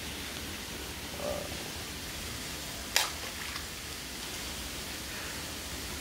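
A single sharp crack about three seconds in, over a steady outdoor hiss: a chicken egg tossed from a balcony hitting below and breaking.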